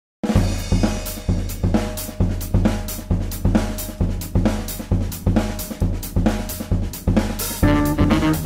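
Jazz drum kit playing the opening groove of a tune: kick drum, snare, hi-hat and cymbals in a steady pattern of accented strikes about two a second. Pitched notes from another instrument join in near the end.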